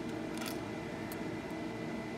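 Steady low electrical hum with a faint high whine, over which small electronic parts give two faint clicks as they are handled in a metal clip, about half a second and a second in.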